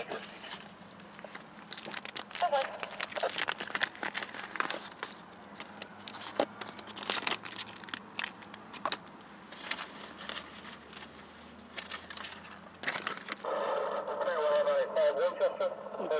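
Muffled, indistinct voices over a low steady hum, with frequent crackling clicks on the recording; a voice comes through more clearly near the end.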